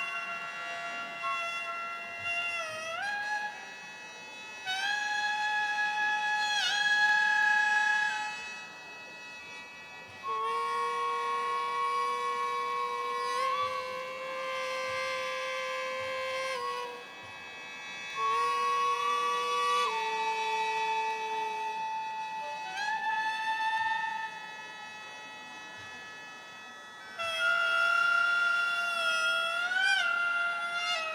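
Gagaku court-music wind ensemble playing slowly. A reedy hichiriki-style melody of long held notes slides up into each pitch, in phrases a few seconds long, over the sustained chords of a shō mouth organ that carry on through the pauses between phrases.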